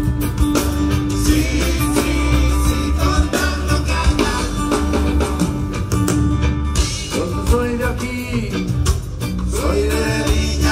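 Live rock band playing through a concert PA, with a steady, heavy bass line and a voice singing over it, heard from far back in the audience.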